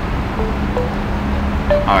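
A phone ringing with an incoming call: a few short, faint ringtone tones over a steady low hum of room noise.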